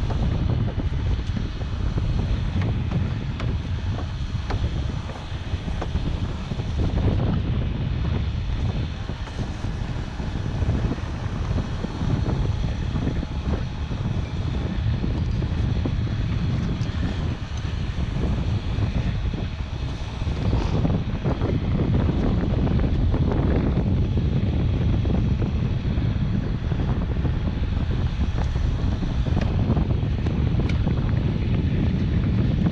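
Wind buffeting a small action-camera microphone: a steady low rumble, with a few faint knocks from hands and rope handling close by.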